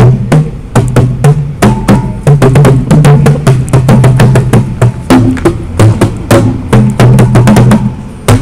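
Outdoor tuned drums, tall cylinders struck with bare hands: a quick run of beats, several a second, moving between a few low pitches in a rhythmic pattern.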